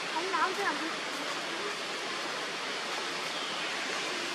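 Steady hiss of outdoor background noise, with a brief voice-like sound about half a second in.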